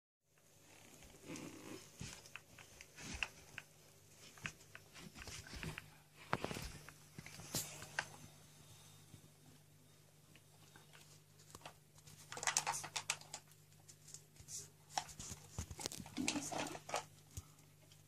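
Faint clicks and rustles of plastic toys being handled on carpet, a toy car and horse trailer being pushed and moved about, with a couple of louder spells of rustling about two-thirds of the way in and near the end. A low steady hum sits underneath.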